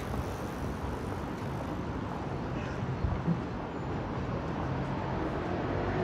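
City street ambience: a steady hum of traffic, with two brief thumps about three seconds in.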